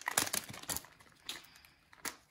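Plastic card-pack wrapper being handled: a quick run of crackles and clicks in the first second, then only a few faint rustles.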